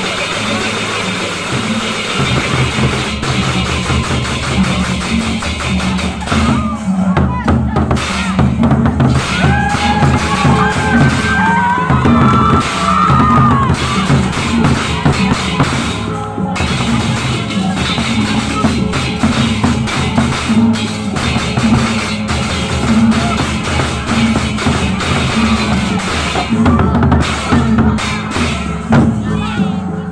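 Gendang beleq ensemble playing: large Sasak double-headed barrel drums beaten in a fast, dense interlocking rhythm, with cymbals clashing over it. A brief wavering high tone rises over the drums about ten seconds in.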